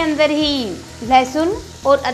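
Chopped onions frying in hot oil in a pan, sizzling as a wooden spatula stirs them. A louder voice runs over the sizzle.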